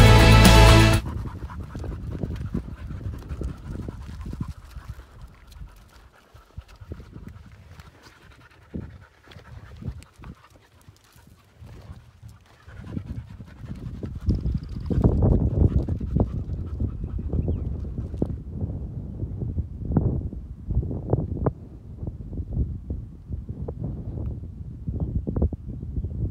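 Background music cuts off about a second in, giving way to outdoor field sound: panting and irregular low thumps and rustles, quiet at first and denser and louder in the second half.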